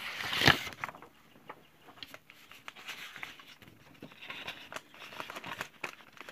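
Sheets of scrapbook paper being handled: a loud paper rustle about half a second in, then lighter rustling and small clicks as the sheets are shifted and turned over.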